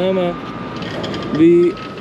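A vehicle's reversing alarm sounding repeated high, steady beeps about half a second long, roughly one a second, over a steady background hum.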